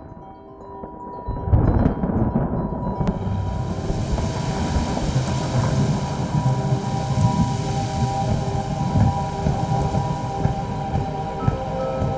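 Trailer soundtrack: a chord of held, sustained tones over a low, dense rumble that sets in about a second and a half in, joined by a hiss like rain from about three seconds.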